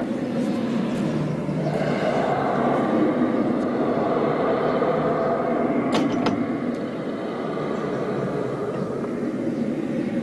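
A steady rumble of a motor vehicle running, with two or three sharp clanks about six seconds in.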